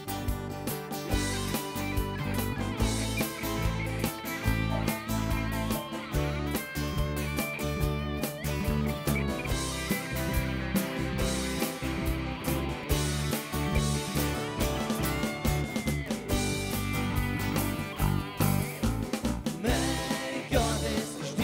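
Live rock band in an instrumental section: a Telecaster-style electric guitar plays a lead line with bent notes over a steady beat on an electronic drum kit.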